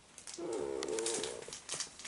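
Laserdisc jackets in plastic sleeves being handled, with crinkles and clicks. About half a second in comes a single pitched sound lasting nearly a second.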